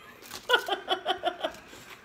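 A short burst of laughter, a quick run of about seven or eight evenly spaced 'ha' pulses starting about half a second in.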